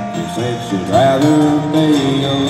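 A live acoustic country string band playing an instrumental passage, with fiddle, upright bass and acoustic guitars, heard through a large hall's sound system.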